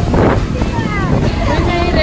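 Tour boat under way: a steady low engine rumble with wind on the microphone and water rushing past, and people's voices over it.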